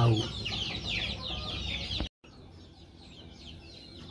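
Young chicks peeping: a continuous stream of short, high, downward-sliding cheeps from many birds. The sound drops out completely for a moment about two seconds in, then goes on more quietly.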